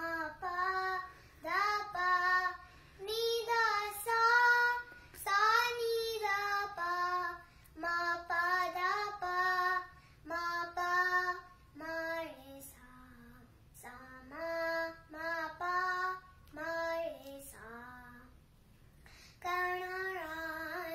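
A young girl singing solo in Hindustani classical style, a chhota khayal in Raag Kedar, in held and ornamented phrases separated by short breaths. No accompanying instrument is heard.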